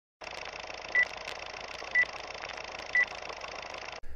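Vintage film-leader countdown sound effect: a steady film hiss with faint crackles and three short, high beeps, one each second.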